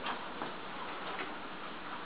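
Boxer dog's claws clicking faintly on a tile floor, a few scattered ticks as it walks up to the gate.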